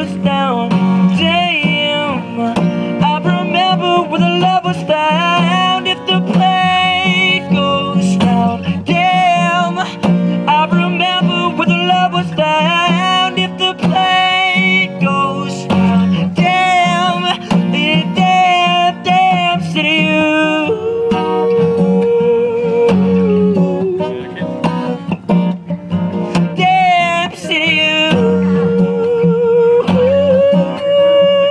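A male voice singing over a strummed acoustic guitar, solo and live, with some long held, wavering notes.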